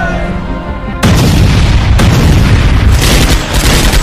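A loud, deep cinematic boom hits about a second in and carries on as a low rumble under the trailer music, with a second sharp hit about a second later.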